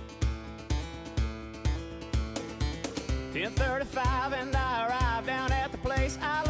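Country song with acoustic guitar over a steady beat of about two low thumps a second; a wavering melodic lead line comes in about halfway through.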